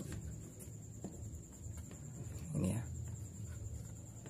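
Low steady background hum with a couple of faint clicks, and a short spoken phrase a little past halfway.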